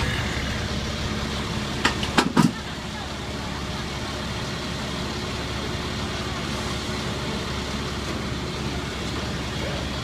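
Steady low hum of idling vehicle engines in city street noise, with three sharp knocks about two seconds in.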